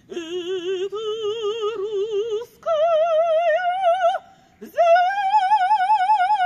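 A woman singing unaccompanied in an operatic style, with a wide, even vibrato on long held notes that climb in pitch. There are two short breath breaks, then a long high note is held near the end.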